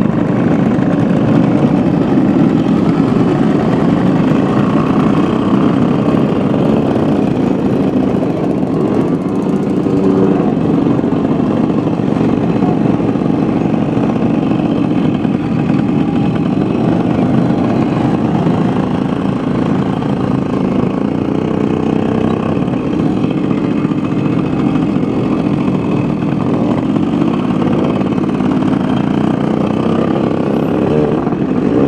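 Several small two-stroke moped engines running together, a loud, steady mix of idling from a group of mopeds.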